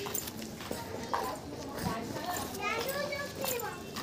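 Children's voices calling and chattering as they play, with rising and falling calls in the second half.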